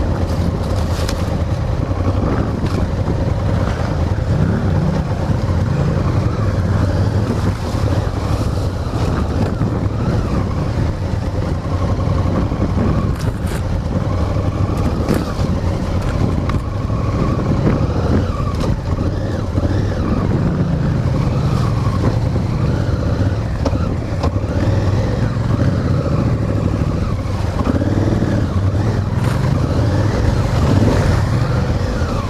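Honda Africa Twin's parallel-twin engine running at slow trail speed, its pitch rising and falling a few times as the throttle is opened and closed, with wind noise on the microphone and a few sharp knocks.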